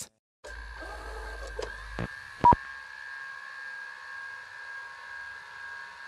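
Steady electronic tones that start just after a moment of dead silence, with a short, loud beep about two and a half seconds in.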